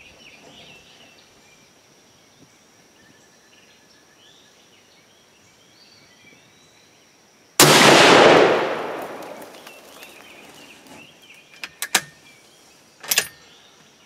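A single shot from a Savage Hog Hunter bolt-action rifle in .308 Winchester, firing a handload of 41.2 grains of Ramshot TAC. It goes off about halfway through, sudden and loud, with an echo dying away over about two seconds. A few sharp clicks follow some seconds later.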